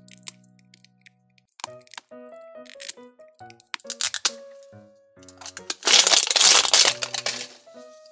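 Thin plastic wrapper crinkling and tearing as it is peeled off a plastic toy ball, loudest in a stretch of about a second and a half starting about six seconds in, with a few small clicks before it. Light background music runs underneath.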